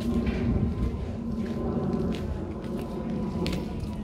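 Wind buffeting a phone's microphone outdoors, a fluctuating low rumble, with a faint steady hum underneath.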